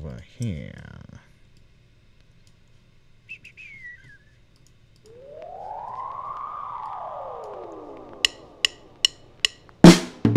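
Electronic music played back from a DAW in pieces: a short downward-gliding synth effect, a brief falling whistle-like chirp, then a long pitched sweep that rises and falls over about four seconds. A run of sharp snare-like ticks comes in under the end of the sweep and leads into a loud drum beat near the end.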